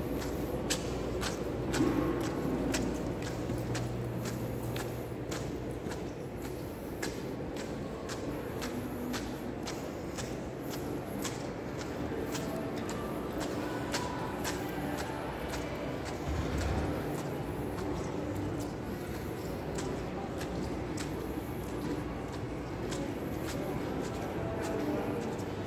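Footsteps on a hard tile floor at a steady walking pace, about two steps a second, over the steady background hum of a large indoor hall.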